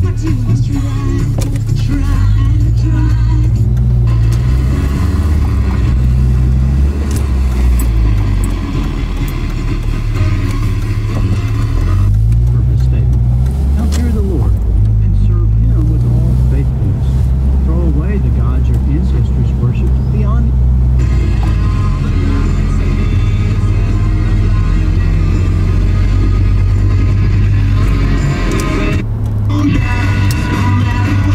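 Music with a heavy, stepping bass line and vocals playing on a car radio, heard inside the cabin of a slowly moving car.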